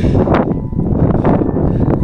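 Loud, gusty wind buffeting the camera's microphone, a dense low rumble that rises and falls with the gusts.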